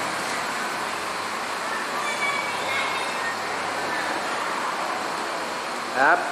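A steady rushing noise with no clear rhythm, with a few faint high squeals about two seconds in.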